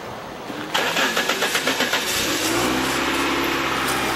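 A car engine being cranked by its starter, a fast chugging for about a second and a half, then catching and settling into a steady idle.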